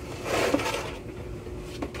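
A short rustling hiss as a cardboard box of powdered laundry detergent is tipped and the powder slides inside, with a small tap about half a second in.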